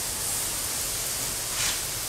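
Water spraying from a garden hose onto crushed gravel to moisten it for tamping: a steady hiss.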